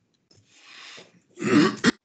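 A person clears their throat with a short, loud cough about one and a half seconds in, after a soft breath.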